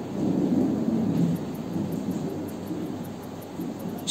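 A low rumbling noise that swells just after the start and slowly fades over the following few seconds.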